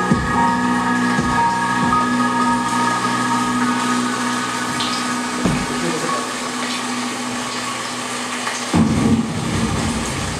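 Live electronic music from keyboards and synthesizer: sustained held chords under a rushing noise wash, with a few low thumps, a cluster of them about nine seconds in.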